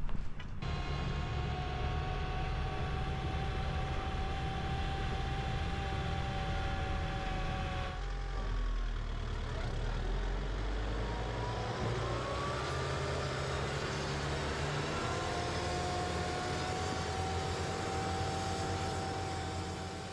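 Aebi TT211 slope tractor's diesel engine running steadily as it drives, with a steady whine over the engine that rises in pitch about twelve seconds in.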